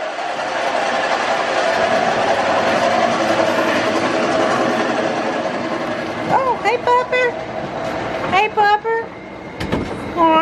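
A steady rushing noise fills the first six seconds, then a husky gives several short, high whining calls that rise and fall in pitch, the vocal 'talking' of an excited dog greeting people.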